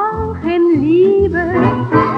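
A light-orchestra song played from a digitized 78 rpm record. A melody line slides between notes with vibrato over a steady rhythmic accompaniment.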